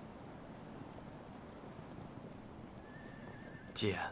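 Low steady outdoor background hiss. Near the end a horse whinnies: a thin high cry that swells into a short loud neigh, overlapping the start of a man's voice.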